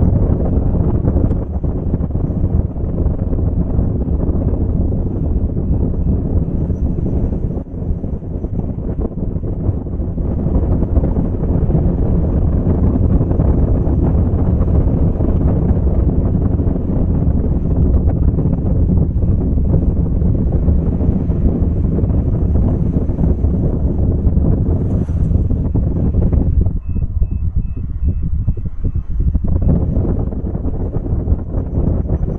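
Steady low rumble of wind buffeting the microphone, mixed with road noise from a car driving along. The higher hiss thins out a few seconds before the end.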